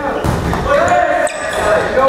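Volleyball being struck twice during a rally, about a second apart, with players shouting in between, echoing in a gym hall.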